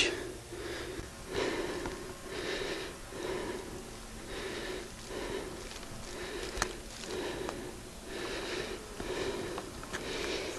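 A man breathing hard and wheezily, about one breath a second, as he walks a steep wooded slope. One sharp click, like a twig snapping, about six and a half seconds in.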